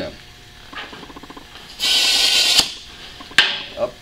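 Compressed air hissing from an air chuck into an inner tube's valve stem for just under a second, cutting off abruptly, then a sharp click. A quick run of small ticks comes before the hiss.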